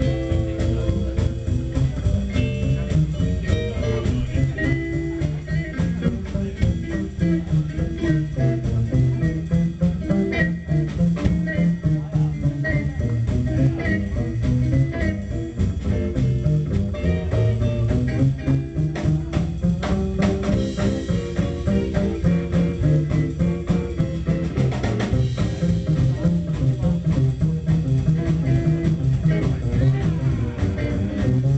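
A live blues trio plays an instrumental passage: electric guitar over upright double bass and a drum kit.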